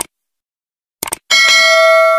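Intro sound effect: a short click, then a quick double click about a second in, followed by a single bell chime that rings on with a bright, steady tone.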